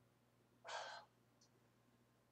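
A man's single short, breathy exhale of under half a second, about halfway in; otherwise near silence.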